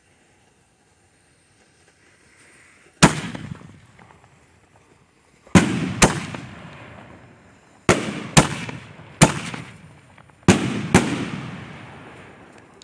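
Brothers 'Grand Jury' 5-inch aerial firework shells bursting overhead: eight sharp booms starting about three seconds in, several coming in pairs about half a second apart, each trailing off in a long rumble.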